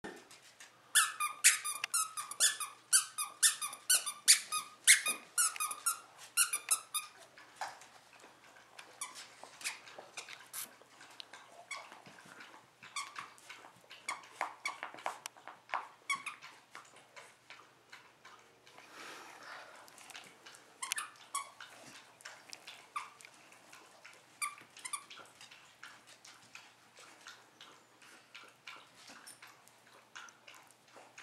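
Squeaker in a plush dog toy being chewed by a basset hound: a quick, loud run of high squeaks, two or three a second, for the first several seconds, then fainter, scattered squeaks and clicks.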